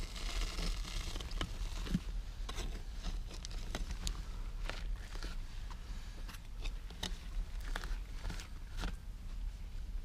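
Hand digging tool scraping and picking at packed soil, making irregular scrapes and small clicks.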